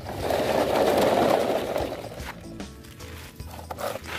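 Plastic toy truck's wheels rolling forward over gravel: a grainy crunching lasting about two seconds, followed by a few light clicks of toys being handled.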